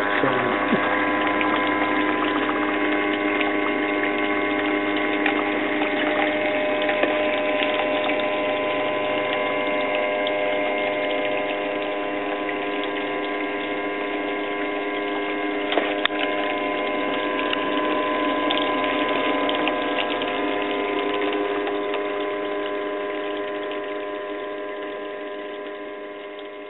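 A small electric water pump runs steadily with a constant motor hum, recirculating water that runs over the sluice's riffles and mesh. It fades gradually near the end.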